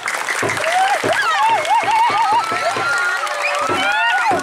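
Many voices shouting and whooping in wavering, overlapping cries over a steady beat of drum strokes about twice a second, with a noisy haze like clashing cymbals or clapping.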